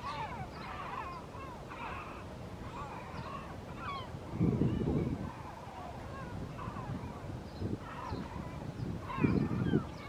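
A flock of gulls calling over and over, short overlapping cries and yelps. Two bursts of low rumble come through, one about halfway and one near the end.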